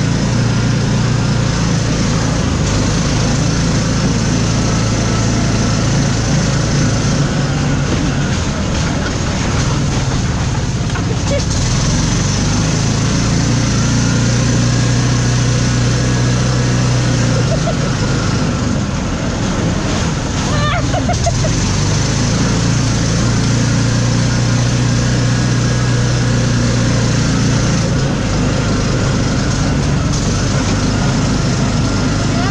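Engine of an open off-road buggy running while it drives along a dirt track. The low engine note holds steady and eases off and picks up again a few times.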